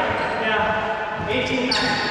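Paddleball rally in an enclosed court: voices throughout, and a sharp echoing smack of the ball about three quarters of the way in.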